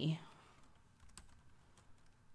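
A few faint, scattered computer keyboard keystrokes, irregularly spaced, just after a spoken word ends.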